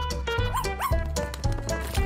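A small dog yipping twice in quick succession over background music with a steady beat.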